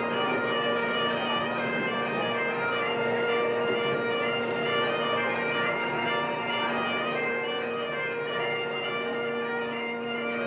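Bagpipes playing a tune over their steady drones.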